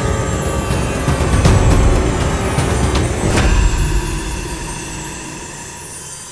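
Sound effect of a swarm of glowing magical fireflies rushing past: a loud low rumbling whoosh with sharp hits, over dramatic background music. The rumble falls away about three and a half seconds in, leaving the music.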